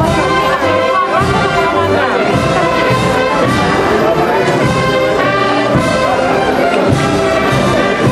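Symphonic band playing a Holy Week processional march, with brass carrying the tune at a steady, loud level.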